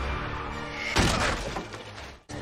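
Film score music with a loud crash about a second in, a sudden impact from a fight scene.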